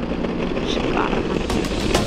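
BMW R 1250 GS boxer-twin engine running steadily while riding, with wind rushing over the rider's microphone. Music comes in near the end.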